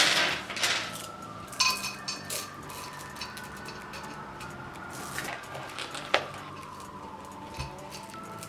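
Polished river pebbles clinking against one another as they are poured and spread by hand in a pot: a dense rush of stones at the start, then a few separate clicks.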